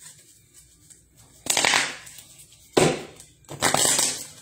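Three short, loud crackling rustles of objects being handled close to the phone's microphone: about a second and a half in, just before three seconds, and again near the end.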